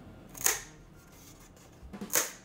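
Scored foam core board snapped along its score line: one sharp crack about half a second in.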